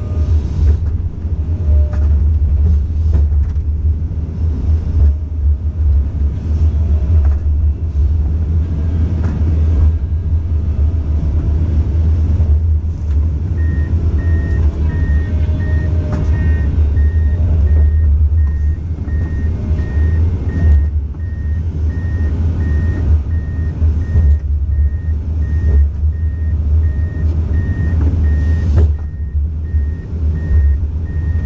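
Komatsu hydraulic excavator's diesel engine running with a steady low rumble. About halfway through, a beeping alarm starts and repeats about twice a second.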